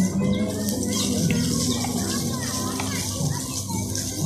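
Crowd chatter from many people, with children's voices among it.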